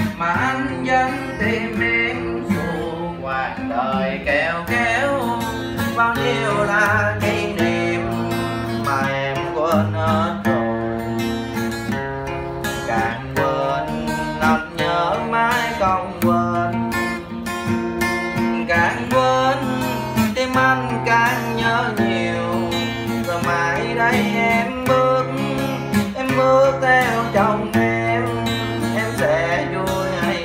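Song accompaniment led by acoustic guitar, with a bass line of held notes changing about once a second and a wavering melody above it.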